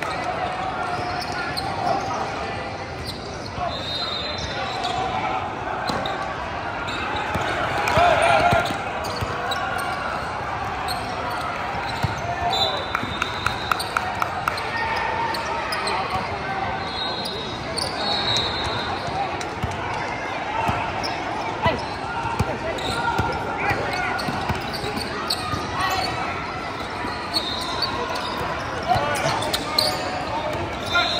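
A basketball game in a large gym: a basketball bouncing on the hardwood court, with a quick run of dribbles about halfway through, short high sneaker squeaks, and players and spectators talking and calling out, all echoing in the hall.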